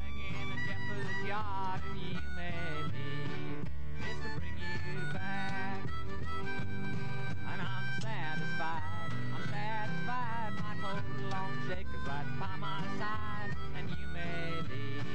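Jug band instrumental: a harmonica plays the lead with bending, wavering notes over strummed acoustic guitar and a steady pulsing washtub bass line.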